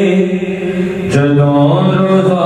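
A man's voice singing a naat, an Urdu devotional poem in praise of the Prophet. He holds one long note, then steps down to a lower held note about a second in.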